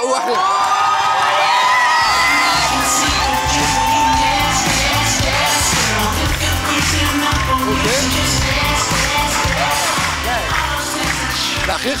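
Studio audience cheering over loud, upbeat pop-style music, whose heavy bass beat kicks in about two seconds in.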